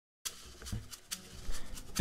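Room noise with faint rustling and a few soft clicks, starting after a brief moment of dead silence and growing slightly louder near the end.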